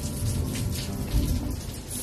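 Rain falling steadily, with a low rumble of thunder a little over a second in.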